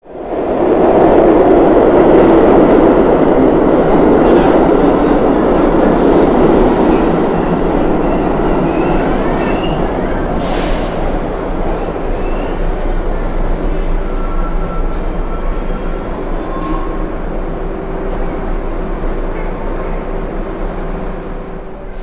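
A New York City Subway R62A train on the 1 line, loud running and wheel-on-rail rumble in an underground station. The rumble starts abruptly and is loudest in the first several seconds, then slowly eases off, with a few brief high squeals partway through.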